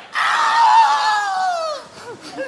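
A person's long, loud, high-pitched scream, falling in pitch near the end.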